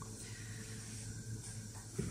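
Quiet room tone: a faint steady hiss with a low hum, and a soft click near the end.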